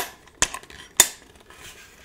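Three sharp metallic clicks from a rifle bipod's extended legs as they are retracted and latch, about half a second apart.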